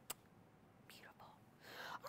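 Near silence, with one short click about a tenth of a second in and a breath drawn in near the end, just before speech resumes.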